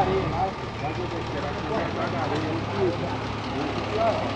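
Dump truck's diesel engine running steadily, with its bed raised to tip a load of soil, and faint voices in the background.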